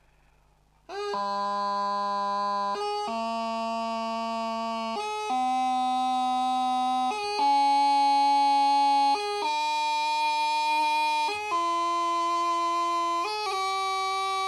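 Bagpipe practice chanter playing a slow ascending scale, starting about a second in, each note held about two seconds and stepping up in pitch. A quick G grace note, the left index finger lifted and snapped back down, is played at each change of note.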